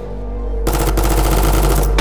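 Burst of rapid automatic gunfire starting about two-thirds of a second in and lasting over a second, over a low sustained music drone.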